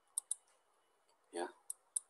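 A few short, sharp clicks of a pen or stylus tapping the screen as binary digits are handwritten onto a digital whiteboard, with one brief spoken 'ya' in between.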